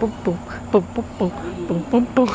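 A voice chanting short, quick, rhythmic syllables, about four a second, as a beat for a toddler to dance to.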